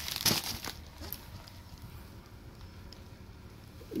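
Plastic padded shipping mailers crinkling and rustling briefly as they are handled, mostly in the first second.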